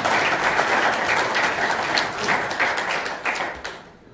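Audience applauding, a dense patter of many hands clapping that dies away toward the end.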